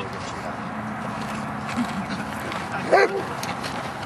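Giant Schnauzer giving a single short bark about three seconds in.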